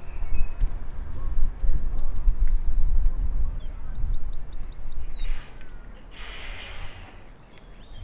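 Wind rumbling on the microphone, with small birds singing quick, high chirping trills from about two to five seconds in.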